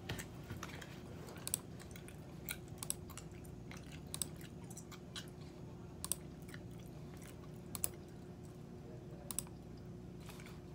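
Gum chewing close to the microphone: sharp, irregular mouth clicks and smacks every second or so, over a steady low hum.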